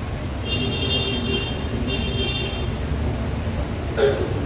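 Steady low traffic rumble with two short horn toots in the first three seconds.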